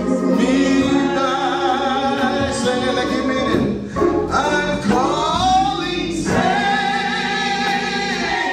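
Gospel hymn sung by several amplified voices, a man and women together, with organ accompaniment. A short break between phrases comes about four seconds in.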